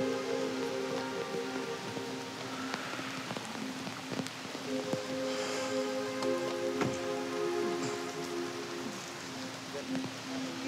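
Steady rain falling, with scattered drops ticking on nearby surfaces, under soft background music of long held notes that change about halfway through.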